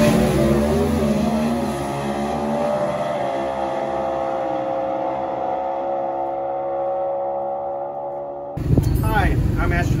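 Drag-racing car, a Chevrolet Cobalt with a 400-cubic-inch engine, accelerating hard down the strip. Its engine note climbs and steps through the gears in the first few seconds, then holds high and fades as the car pulls away. About 8.5 seconds in, it cuts off suddenly to a man talking.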